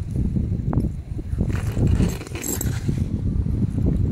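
Wind rumbling on the microphone, with a few faint metallic clinks about halfway through.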